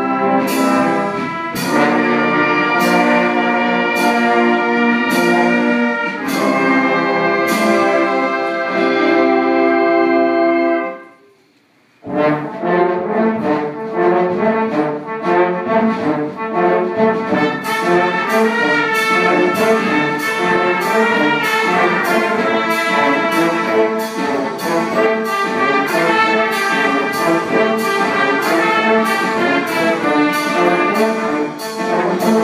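Brass band (fanfara) of trumpets, trombones and tuba playing held chords over regular drum beats. About eleven seconds in the music breaks off for about a second, then resumes in a quicker, busier passage with a steady beat.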